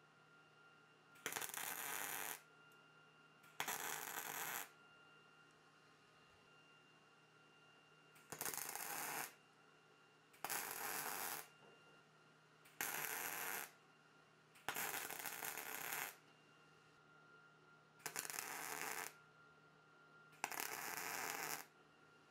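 MIG welder tack welding steel washers together: eight short arcs of about a second each, a steady frying crackle that starts and stops sharply, with a few seconds' pause between tacks.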